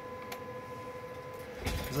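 Steady faint electronic whine from radio test-bench equipment, with two light clicks near the start.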